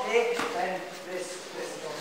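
Indistinct voices in a large training hall, with one sharp smack about half a second in: a boxing glove striking a partner's guard during a sparring demonstration.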